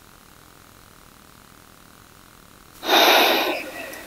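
A person lets out a held breath in one forceful rush through the nose about three seconds in, fading within a second: the release at the end of a breath retention (bandha). Before it there is only quiet room tone.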